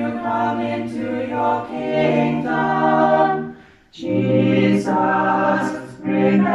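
A small group of voices singing a hymn unaccompanied, in long held phrases with a breath break about four seconds in.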